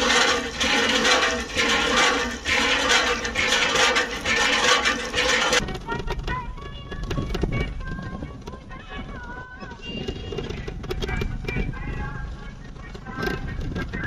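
Village hand pump being worked by its handle in rhythmic strokes, water gushing from the spout into a bottle and basin. About five and a half seconds in it cuts to background music with a wavering melody.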